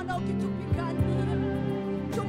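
Live worship music: a woman's solo singing voice wavering over sustained keyboard chords, with two low drum thumps near the middle.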